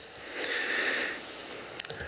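A person breathing in audibly close to a microphone: a soft hiss lasting about a second, followed by a couple of faint clicks near the end.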